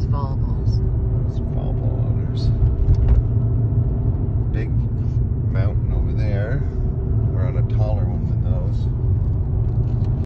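Steady low rumble of a car driving at road speed, heard from inside the cabin: tyre and engine noise with no change in pace.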